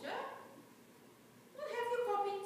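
A person's voice making drawn-out sounds with sliding pitch: one just at the start and another rising in near the end, with a quiet gap between.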